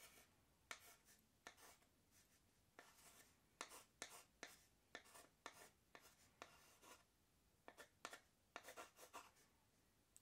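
Pen writing by hand: faint, short, irregular strokes.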